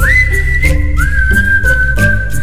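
Background music: a whistled melody of long held notes, the first high and the second a step lower about a second in, over a bass line and a light ticking beat.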